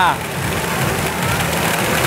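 Steady loud din of a pachinko parlour: many machines and their steel balls running together, with the tail of a man's voice right at the start.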